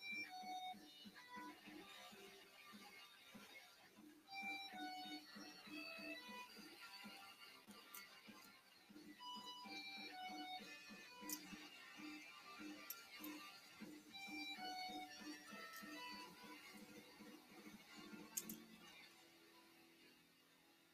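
Quiet background music: plucked, guitar-like notes in a phrase that repeats about every five seconds over a steady low pulse, with a few faint clicks.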